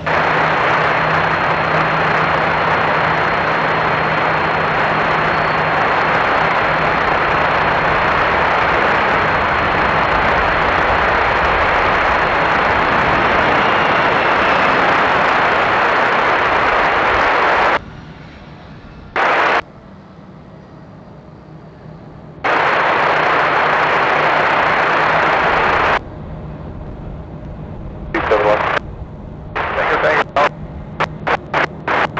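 Air traffic control radio static: a steady rush of hiss with no voice on the channel, switching on and off abruptly. It cuts out after about eighteen seconds, comes back in two shorter bursts, and breaks up into choppy bursts near the end.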